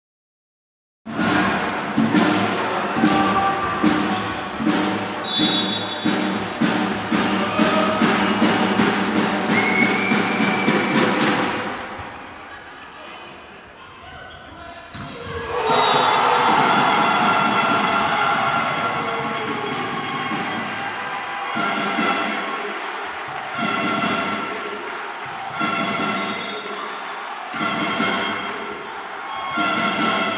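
Volleyball match audio in a large sports hall: crowd noise with loud rhythmic banging and thuds for about ten seconds. After a brief quieter spell, the crowd noise and ball thuds of a rally return.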